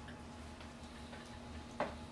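Steady room hum with faint ticking, then one sharp click near the end, a laptop key pressed to advance the presentation slide.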